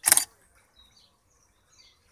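Canon 550D DSLR's shutter and mirror firing once at the very start, the last of three frames in an automatic HDR exposure bracket. Faint bird chirps follow.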